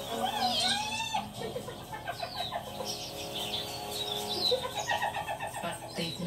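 Nature documentary soundtrack playing from a TV: birds calling and chirping over long held music notes, with a quick run of repeated calls about five seconds in.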